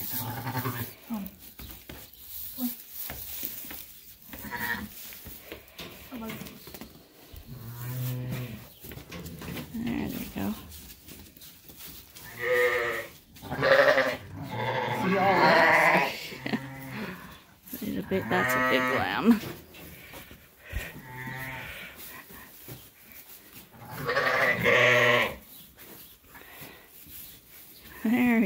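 Sheep bleating repeatedly, a ewe and her lamb calling to each other. There are quieter, low calls in the first half and louder calls of one to two seconds each in the second half.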